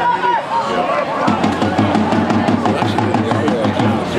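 Touchline spectators at a rugby match shouting as play moves. About a second in, a low, steady rhythmic beat comes in under the voices.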